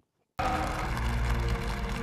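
A moment of silence at a cut, then the soundtrack of a film clip comes in: low, held music under a steady, noisy wash.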